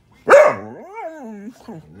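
Doberman/Border Collie mix giving one loud alarm bark about a quarter second in. The bark draws out into a long call that rises and falls in pitch, an alert at the mail carrier.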